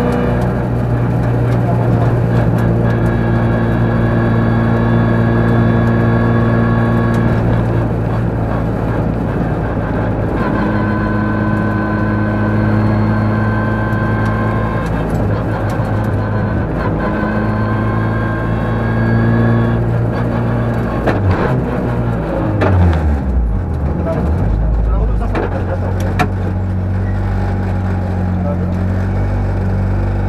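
Rally car engine heard from inside the cabin, running at steady high revs with a few brief breaks, then the revs falling away in several drops as the car slows, settling into a lower steady note near the end. The car is an Opel Adam Cup.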